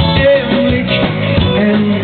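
Swedish dance band playing live: electric guitar, keyboard and drum kit with a steady, even beat of about two strokes a second.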